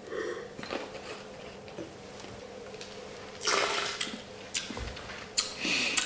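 A wine taster sipping white wine and drawing air through it in the mouth: a short hissing slurp about halfway through, among faint mouth clicks. Near the end come a couple of light knocks as the wine glass is set down on the table.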